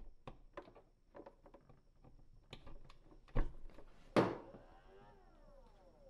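Power cord and plug handled with small clicks and rustles, then a knock as the plug is pushed into the wall outlet. The Kobalt 24-volt four-port charger's cooling fan then kicks on briefly at power-up, a short whir that falls in pitch over about a second.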